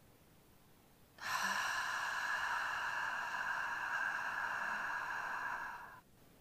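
A woman's long, steady audible exhale, a breathy hiss without voice that starts about a second in, lasts about four and a half seconds and fades out at the end. It is the slow breath out of a paced diaphragm-breathing exercise.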